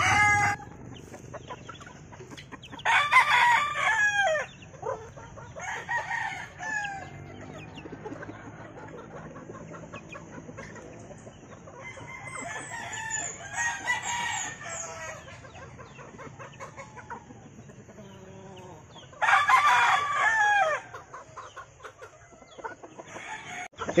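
Gamefowl roosters crowing, with long loud crows a few seconds in and again late, and quieter clucking from young cockerels in between.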